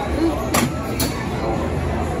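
Steady low rumble of a clamshell dark-ride vehicle moving along its track, with indistinct voices in the background and two sharp clicks about half a second and a second in.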